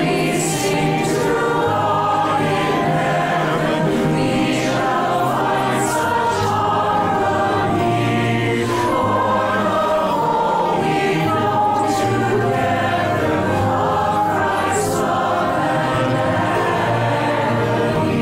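Virtual choir of men's and women's voices singing together, each singer recorded separately and the recordings mixed into one choir.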